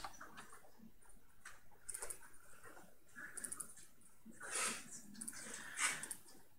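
Faint room sound with scattered light clicks and two short, soft hissy noises near the end.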